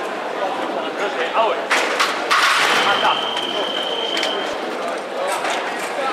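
Sharp clicks of sabres meeting, then the electric fencing scoring machine's steady high beep, held nearly two seconds, signalling that a touch has registered. A loud voice comes just before the beep.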